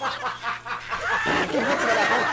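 Light snickering laughter from a person, in short broken bursts.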